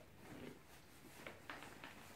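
Near silence with faint rustling of a T-shirt being pulled on over the head.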